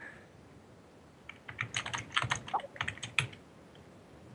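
Typing on a computer keyboard: a quick, irregular run of key clicks starting about a second in and stopping about two seconds later.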